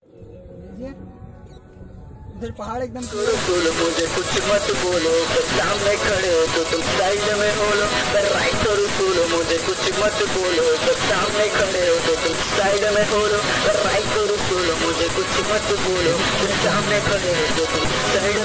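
A loud, steady hiss starts suddenly about three seconds in and covers everything after. Under it a man's voice rises and falls in a sing-song pitch.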